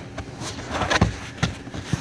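A few irregular knocks and rustles from handling in a car's interior, around the rear seat and the hybrid battery pack, loudest about a second in.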